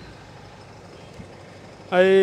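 Steady hum of a parked coach bus idling, with a voice starting near the end.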